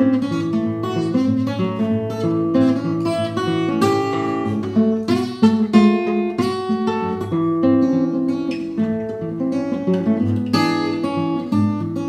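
Solo steel-string acoustic guitar, fingerpicked: an instrumental break of plucked melody notes over bass notes, with no singing.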